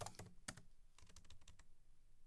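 Faint computer keyboard typing: a string of short, scattered keystrokes.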